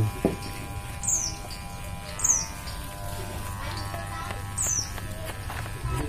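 Electric hair clipper buzzing steadily through a haircut, while a bird repeats a short, high call falling in pitch about once a second.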